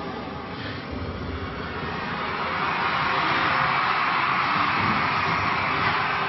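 A steady rushing noise picked up by a performer's handheld stage microphone, swelling about two seconds in and holding, with faint music bleeding in underneath.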